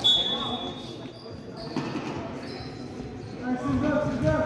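A referee's whistle blows once, a single steady high note about a second long, the usual signal for the serve in volleyball. Voices follow near the end.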